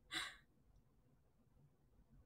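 A woman's short breathy exhale trailing off the end of a laugh just after the start, then near silence.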